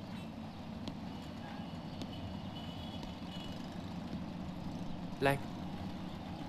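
A steady low background rumble with a few faint clicks, and a short vocal sound about five seconds in.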